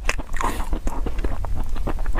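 Chewing a mouthful of soft, sticky mochi close to the microphone: a quick run of small mouth clicks and smacks.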